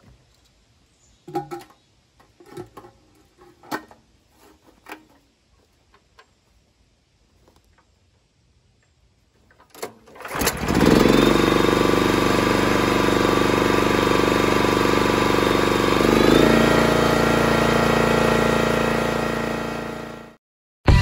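Small single-cylinder gas engine on a homemade hydraulic log splitter, pull-started by its recoil cord about halfway through. It catches at once and runs steadily, its pitch stepping up a little a few seconds later. Before the start there are only a few light clicks and knocks as the engine controls are set.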